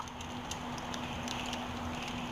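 Faint crackling of a fire in a fireplace, a few soft ticks over quiet room tone, with a low steady hum.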